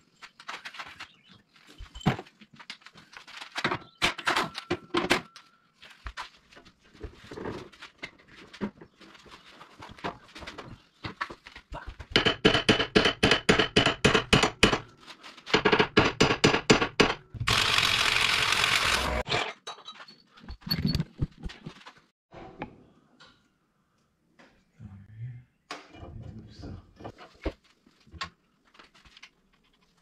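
Workshop work under a car on a lift: scattered clanks and knocks of tools and parts, and in the middle a run of rapid, even clicking from a wrench working on the fasteners under the front of the car. Right after it comes a steady hissing whirr about two seconds long.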